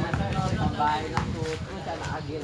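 People's voices talking and calling out over one another, with a single sharp knock about a second in.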